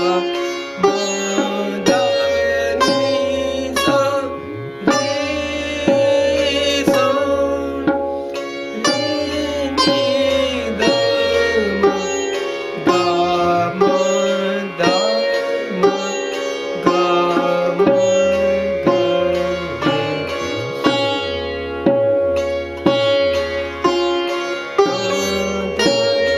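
Sitar playing the sthai of a slow gat in Raag Sohni at 60 beats per minute: plucked melody notes, some bent in glides, over the steady ringing of the drone and sympathetic strings. A low beat about once a second keeps time underneath.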